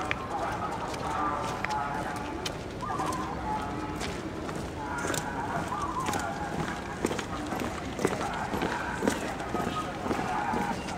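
Chatter of onlookers, with scattered footfalls of a marching guard column's boots on stone paving.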